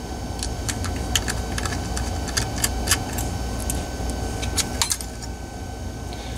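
Small metallic clicks and clinks, irregular and scattered, from a precision screwdriver and the thin metal caddy rail of a 2.5-inch laptop hard drive as the caddy is unscrewed and taken off the drive.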